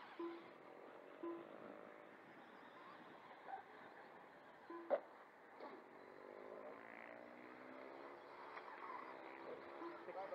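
Electric motors of RC motorcycles whining faintly, their pitch rising and falling as the bikes accelerate and brake around the track. There are a couple of short beeps in the first two seconds and a sharp click about five seconds in.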